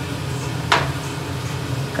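A single knock a little under a second in, as a piece of beef shin is set down in a metal roasting tray, over a steady low hum.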